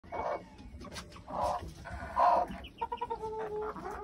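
Bantam chickens clucking: three louder, drawn-out calls in the first couple of seconds, then a run of quick, short clucks.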